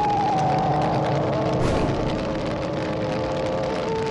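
A drawn-out creature roar sound effect: howling tones slowly falling in pitch over a rushing hiss.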